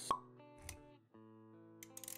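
Intro sound design over music: a single sharp pop just after the start, a brief swish around the middle, then a short break and steady held musical notes from about one second in, with a few light clicks near the end.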